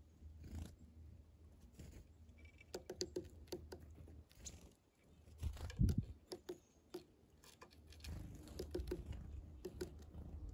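Small birds, a red-breasted nuthatch and then a chickadee, pecking at a birdseed cake on a plywood feeder board: faint, irregular light taps and clicks, with one louder low thump about six seconds in.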